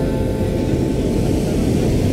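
Low, steady rumble of noise with no clear pitch, as the last strummed acoustic-guitar chord dies away in the first moment and the guitar stays silent.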